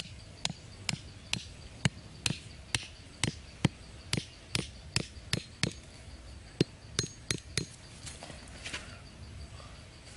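Thin wooden stake being knocked into dry dirt with a hand-held knife: a steady run of sharp knocks, about two a second, that stops about three quarters of the way through.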